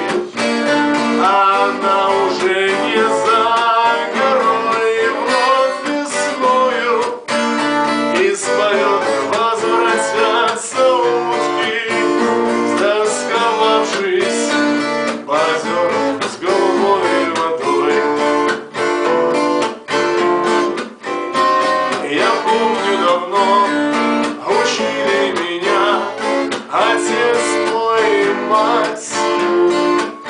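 A man singing to a strummed twelve-string acoustic guitar.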